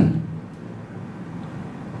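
A pause in a man's talk: his last word fades into the room's echo, then only steady low room noise remains.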